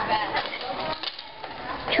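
Indistinct chatter of students' voices, dropping to a lull about a second in and picking up again near the end.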